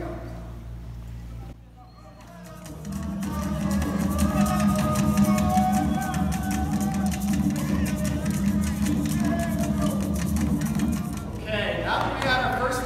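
Recorded Haitian rara music played over a PA loudspeaker: deep drums and shakers in a repetitive beat, with sustained pitched lines above. It fades in about three seconds in and stops shortly before the end.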